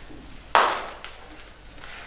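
A single sharp tap or knock about half a second in, fading quickly in the room's echo, against quiet room sound.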